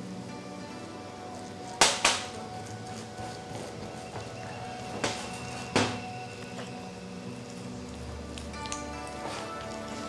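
Soft background music, with a few sharp knocks on a ceramic mixing bowl: two close together about two seconds in and two more around five and six seconds in, as mashed tofu is scraped from a small cup and worked into the dough with a silicone spatula.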